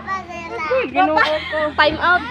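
Children's voices calling out and chattering, high-pitched, in quick short phrases.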